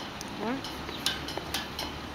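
Irregular light clinks and taps of small hard objects, about eight in two seconds.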